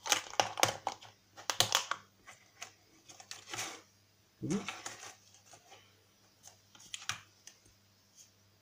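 Small clear plastic display case clicking and rattling in the hand, with quick clusters of sharp clicks in the first two seconds and a few more later as its hinged lid is worked open.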